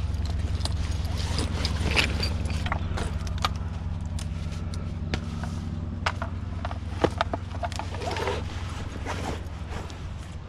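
Scattered clicks and knocks of hard objects being handled and set down on concrete, over a steady low mechanical hum.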